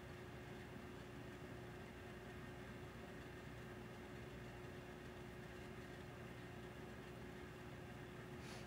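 Quiet, steady room tone: a faint hiss with a low hum and a thin steady tone underneath, unchanging throughout.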